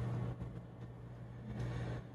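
Room tone with a steady low electrical hum and no other distinct sound.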